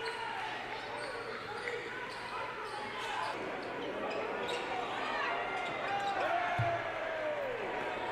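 Indoor basketball game sound: a ball bouncing on a hardwood court, sneakers squeaking in short curving squeals, and background crowd chatter, with one low thump late on.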